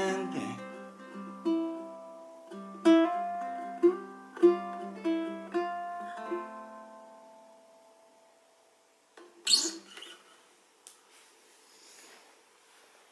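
Spruce and macassar ebony tenor ukulele (a Moore Bettah) closing the song: a run of single picked notes ends on a final chord that rings out and fades to near silence. Near the end there is a short burst of rustling noise.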